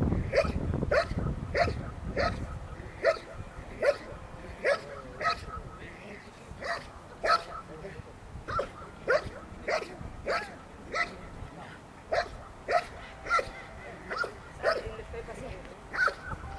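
Belgian Malinois barking steadily at a motionless decoy, about one and a half barks a second. This is the dog holding the decoy at bay in a French Ring guard, barking instead of biting while the man stays still.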